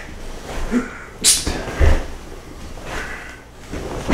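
A barefoot karate front kick in a cotton gi on a wooden floor. There is a short, sharp hiss a little over a second in, then a low thump about half a second later as the kicking foot comes down, with fabric rustle around them.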